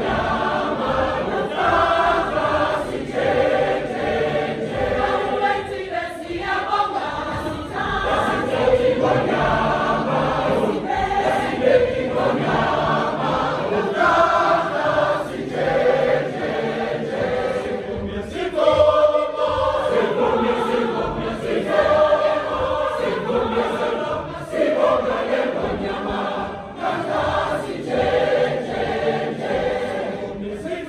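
A large mixed choir of women and men singing a gospel song together in full voice.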